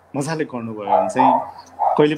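A man speaking, heard over a video-call connection.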